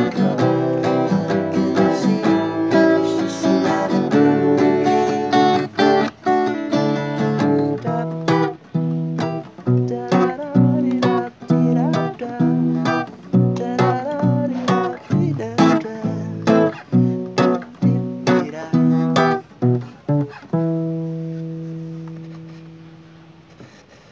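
Grailton cutaway acoustic guitar strummed in a steady rhythm of chords, ending on a last chord that rings and slowly fades.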